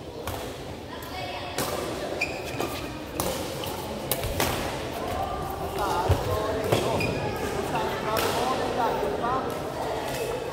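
Badminton rackets striking a shuttlecock in a rally, several sharp cracks at uneven intervals of a second or more, over background voices in a large hall.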